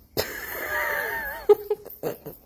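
A horse whinnying: one call of about a second, with a pitch that wavers up and down toward its end. A sharp knock follows at about a second and a half.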